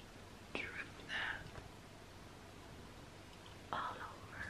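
A woman whispering a couple of short words, with a long quiet pause of faint room tone between them.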